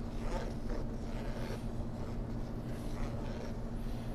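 A flat wooden stick stirring liquid dye in a tray: a series of short swishing strokes through the water, over a steady low hum.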